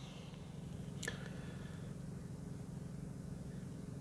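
A low, steady hum inside the car's cabin, with one brief faint tick about a second in.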